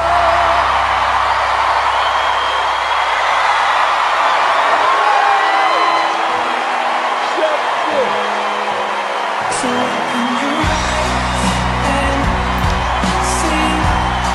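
A studio audience cheering and applauding loudly, with whoops, as a singer's last held note of a soul ballad ends. About ten seconds in, backing music comes in with low sustained chords beneath the applause.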